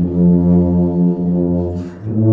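Brass ensemble playing a slow hymn in held chords, with tubas on the low notes. The chord dies away near the end and a new one follows.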